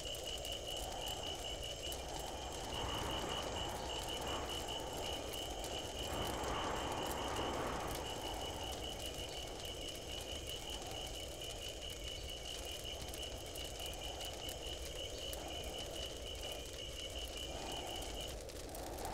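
Night ambience: a cricket chirping in rapid, even pulses over a low, rising and falling rushing noise.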